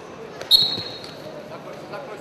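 A referee's whistle: one short, sharp blast about half a second in, restarting the wrestling bout in the par terre position, over the steady murmur of an arena crowd.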